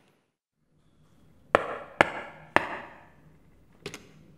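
Three sharp knocks about half a second apart, each dying away with a short ring, then a quick double click near the end.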